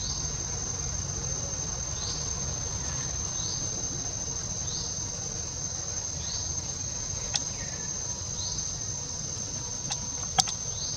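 Steady high-pitched insect drone, with short rising chirps repeating every second or so, over a low rumble. A single sharp click comes about three-quarters of the way in.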